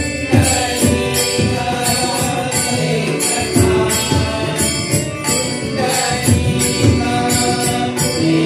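Marathi devotional bhajan (an abhang): group singing with harmonium, a barrel drum and small hand cymbals keeping a steady beat.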